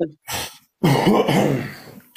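A person clearing their throat: a short rasp, then a longer rough one lasting about a second.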